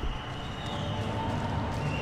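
Steady ambience of an indoor swimming arena: an even wash of hall noise with a low hum underneath and no distinct events.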